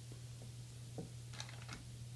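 Faint light clicks of small metal parts being handled at a bore in an aluminium automatic-transmission valve body: a single click about a second in and a short cluster of clicks just after. A steady low hum runs underneath.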